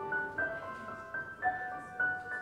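Slow keyboard music: a melody of held notes over chords, a new note every half second or so.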